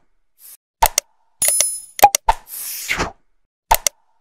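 Looped like-and-subscribe sound effects: quick mouse-style clicks, a bell-like ding, and a whoosh, repeating about every three seconds.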